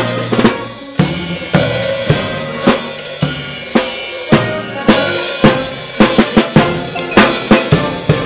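A drum kit played with sticks, heard close up: sharp snare and bass-drum strokes with cymbals, with a quicker run of hits about six to seven seconds in, over sustained chords from a piano and horn ensemble.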